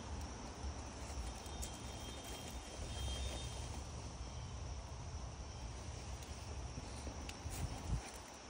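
Quiet background ambience: a steady faint insect drone over a low rumble, with a few faint clicks.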